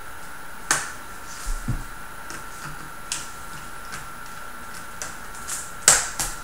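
Sharp, separate clicks and snaps as a small screwdriver pries at the bottom access panel of a Dell Vostro 3360 laptop. There are about half a dozen, spread out, with a low knock early on and the loudest snap near the end.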